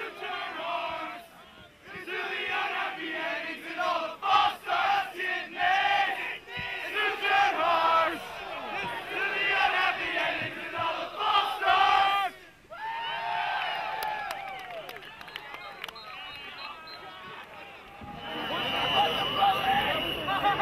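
A crowd of many voices shouting together in short rhythmic bursts, a gang-vocal chant or sing-along with no instruments heard. The shouting dies down about thirteen seconds in. Near the end a louder wash of crowd noise comes in, with a steady high tone over it.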